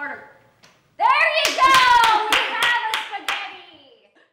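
A woman's excited high-pitched cry, rising and then gliding down in pitch, with about six sharp hand claps starting about a second and a half in.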